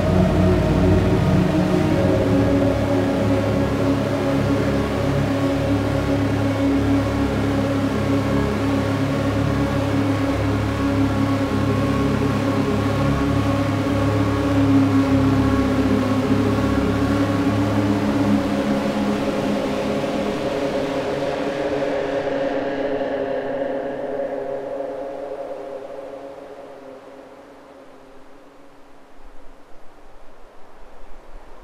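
Psychedelic dark ambient dungeon synth: layered, sustained synthesizer drones over a low pulsing bass. The bass pulse stops about two-thirds of the way in, and the drones then fade out, ending the track. A faint, hissing noise begins just at the end.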